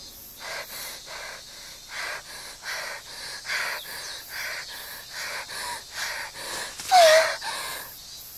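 A girl's voice panting hard and out of breath, quick audible breaths about three a second. About seven seconds in comes one louder gasp with a falling pitch.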